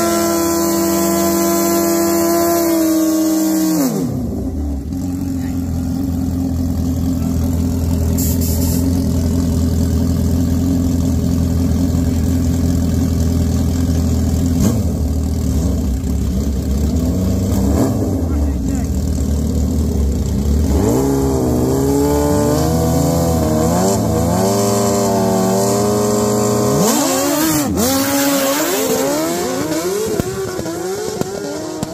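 Two sport motorcycles, one a Suzuki Hayabusa with its inline-four, at a drag-race start line: an engine held at high revs for the first few seconds drops back to a low running note. Then there are repeated rev blips, and near the end both bikes launch hard and accelerate away down the strip.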